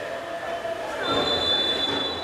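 Field sound from a football match: stadium crowd noise with a sustained, shrill, high-pitched tone starting about halfway through.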